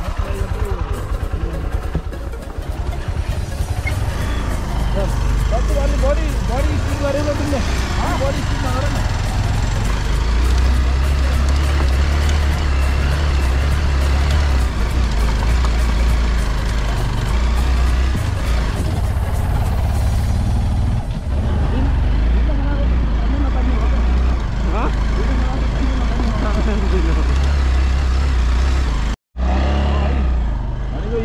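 Bajaj Pulsar 200 motorcycle running steadily at low speed over a rough, stony trail, with a strong low rumble. The sound cuts out briefly near the end.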